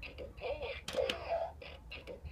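Bop It Extreme 2 toy on low batteries, playing short electronic voice calls and game sounds, with a couple of sharp plastic clicks from its controls about a second in.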